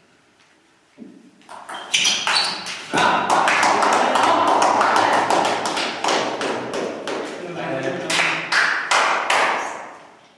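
Table tennis ball tapping off bats and table in a short rally, then from about three seconds in loud clapping and shouting from spectators and players as the point is won, dying away near the end.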